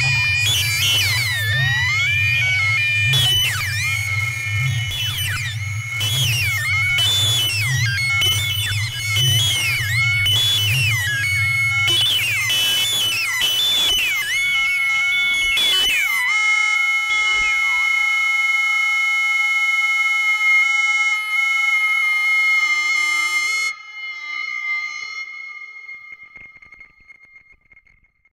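Eurorack modular synthesizer patch built around Mutable Instruments Stages, Tides and Marbles, heavily modulated: a low bass drone under noisy percussive hits and tones that glide up and down in pitch. About 16 seconds in, the bass and hits drop out and only steady high tones remain. These cut off at about 23 seconds, and the sound fades to near silence.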